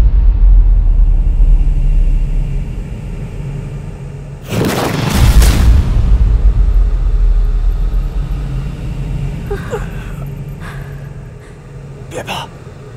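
Dramatic film sound design: a deep rumble that starts with a sudden hit, a loud rushing swell about four and a half seconds in, then a slow fade toward the end.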